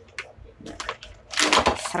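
Clear plastic bag crinkling and rustling as hands pull a vacuum-sealed food pouch out of it, with a few light clicks first and the loudest crinkle about a second and a half in.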